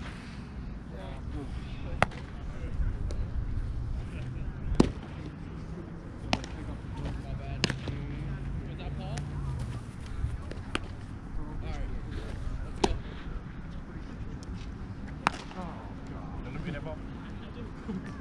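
Baseballs popping into leather gloves: about seven sharp, single cracks at uneven intervals of one and a half to three seconds, with faint voices in between.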